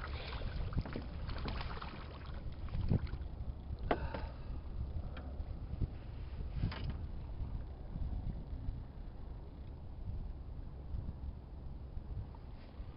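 Steady low rumble of wind on the microphone and water lapping against a small boat's hull, with a few sharp knocks about three, four and seven seconds in.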